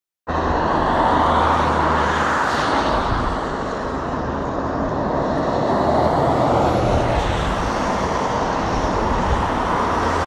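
Diesel engine of a rail-mounted crane running as the machine travels along the track, a steady low hum under a broad rushing noise.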